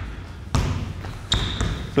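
A basketball dribbled on a hardwood court floor, two bounces about a second apart, with a brief high squeak near the end.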